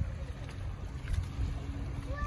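Wind rumbling and buffeting on the microphone, an uneven low noise throughout.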